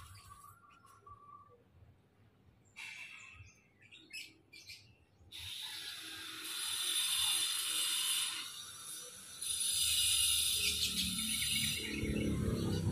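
A small songbird giving a few short high chirps, then singing in two long stretches of rapid, high chattering song, each about three seconds.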